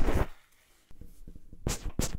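Leather-gloved fingers rubbing and scratching right on a recorder's microphone, close up. The rubbing stops a moment in. After a short silence come faint ticks, then sharp clicks near the end.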